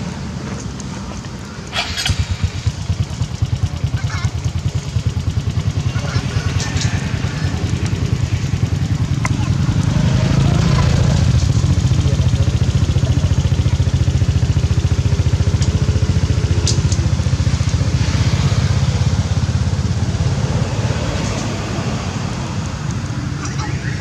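An engine running, a low pulsing rumble that builds over the first few seconds, holds strongest through the middle and eases off near the end, with a few sharp clicks over it.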